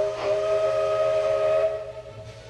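Steam locomotive whistle blowing one steady chord of several notes for nearly two seconds, then stopping.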